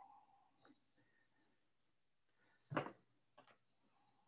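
Near-silent room broken by a single short knock a little under three seconds in, with a few faint clicks before and after: handling noise as a phone and a light object are handled in someone's hands.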